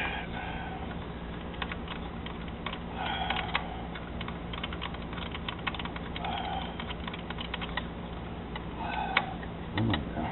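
Irregular light clicks of a socket ratchet and metal tools working the throttle body's mounting bolts, over a steady low hum.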